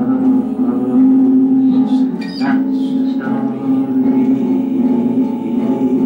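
A man singing to his own strummed acoustic guitar, holding long notes.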